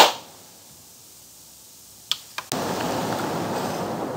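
A sharp click right at the start, two smaller clicks a little past two seconds in, then a steady rushing noise that starts abruptly about half a second later.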